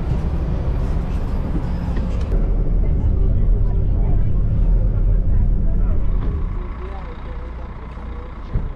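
Low rumble of a diesel coach bus's engine with passengers murmuring as they board. After an edit a couple of seconds in, a deeper, louder rumble takes over and eases off near the end.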